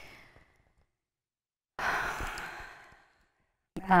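A woman's breath: a short breath at the start, then about two seconds in a longer, audible sigh that fades out over about a second and a half.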